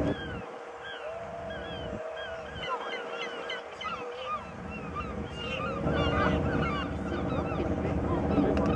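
A flock of birds calling, a dense run of short down-slurred calls, over the steady hum of ship engines in the harbour.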